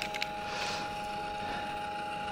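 VPI MW-1 Cyclone record cleaning machine's turntable motor running in reverse, turning the record with a steady hum carrying two faint steady tones. A couple of light clicks come right at the start.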